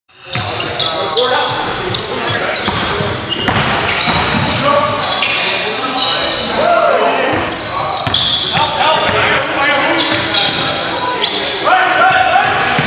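Basketball game sounds: a ball bouncing on the gym floor and players' voices calling out, echoing around the gym.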